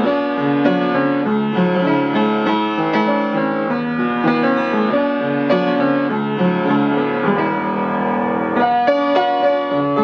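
Reid-Sohn upright piano being played: a continuous passage of chords and melody at an even volume.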